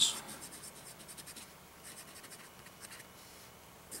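Gold nib of a 1940s Waterman Stalwart fountain pen writing on paper: faint scratchy pen strokes, in two runs with a short lull between them and a quieter stretch near the end.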